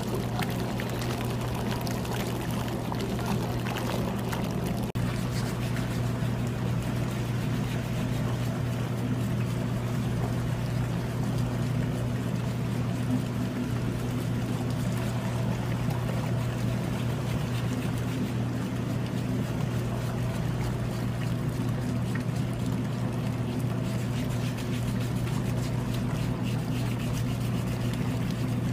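Pedicure footbath's whirlpool pump running, a steady low motor hum with water churning in the basin.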